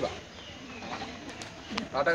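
A bird cooing faintly in the background between phrases of a man's speech.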